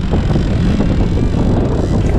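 Jet ski under way, its engine and hull noise mixed with wind buffeting the microphone in a steady low noise.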